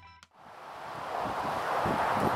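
Gusty wind rushing across the microphone, swelling steadily louder from near nothing about a third of a second in. The last notes of an electric guitar die away at the very start.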